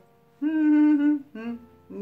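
A woman humming with closed lips: one held, even "hmm" of about a second, then a shorter one.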